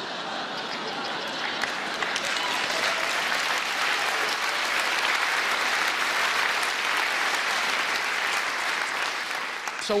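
Audience applauding, the clapping building over the first couple of seconds and easing off near the end.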